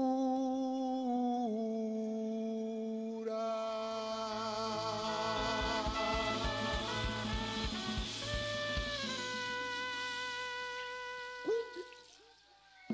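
Live cumbia orchestra in a slow, free-time passage. Long sung notes step down in pitch, then the brass section of trumpets and trombones joins with full held chords over a few drum and bass hits, and the chord dies away near the end.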